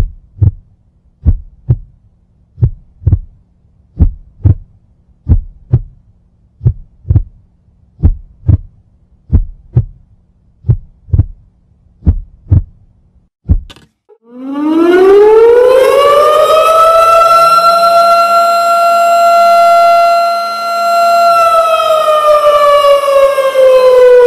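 Heartbeat sound effect, a double thump about every 1.4 seconds, for roughly the first half. Then an air-raid siren winds up, holds a steady wail, and starts to wind down near the end.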